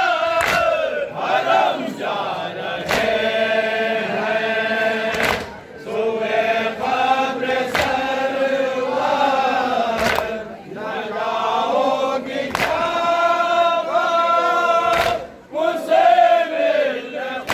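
A crowd of men chanting a nauha (Shia lament) together, with a sharp unison chest-beat (matam) striking about every two and a half seconds.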